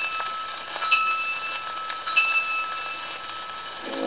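Light orchestra on an old gramophone record in a thin passage: ringing bell notes from orchestral percussion, struck twice about a second apart over steady record surface hiss, with the full orchestra coming back in at the very end.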